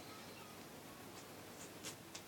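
Very faint hiss with a few soft, scratchy ticks in the second half: handling noise from close-up filming of a plastic action figure on a blanket.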